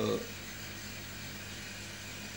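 A steady, even background hum of room tone, with a faint low drone, after a single spoken word at the very start.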